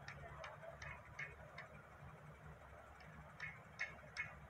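Faint, sharp clicks at about two or three a second, in a short run at the start and another near the end, over a quiet outdoor hush.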